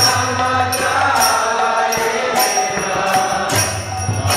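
Devotional chanting of a Bengali Vaishnava bhajan, a man's voice leading the song through a microphone. Small metallic hand cymbals are struck along with it, ringing sharply every half second to a second.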